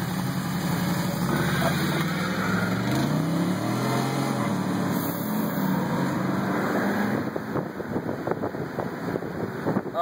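Tuned 2001 Chevrolet Silverado 2500 HD's Duramax 6.6 L turbo-diesel V8 accelerating hard from a standing launch, heard from inside the cab, its engine note climbing and stepping through the gears. Toward the end the engine note blurs into rough road and wind noise.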